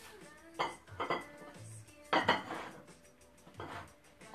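Plates and cutlery clinking and clattering as tableware is handled, with the loudest clatter about two seconds in, over background music with a steady beat.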